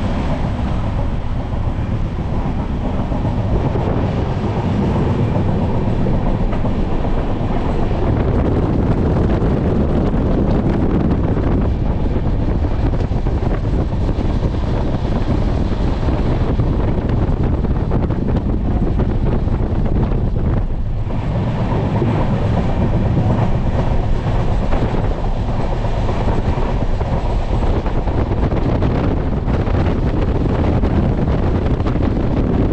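Indian Railways sleeper coach heard from inside as the train runs at speed: a steady rumble with the wheels clattering over the rails.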